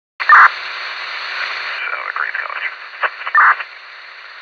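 Police two-way radio: a short two-note chirp as it opens, then a thin band of static with a faint garbled voice, a second chirp about three and a half seconds in, then steady hiss.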